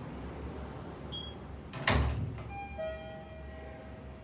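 A single heavy thump about two seconds in, followed by a metallic ringing of several tones that fades out over about a second.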